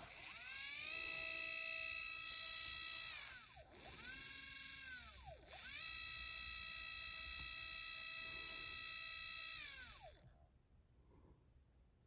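Hobbywing Xerun V10 17.5T brushless motor spinning unloaded under the Tunalyzer's sensorless auto test: a high-pitched whine with many overtones. It spins up, dips in pitch and comes back up twice, holds steady, then winds down about ten seconds in.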